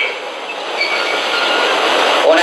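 Steady, fairly loud hiss-like background noise with no speech, spread evenly across the range, with a few faint brief tones.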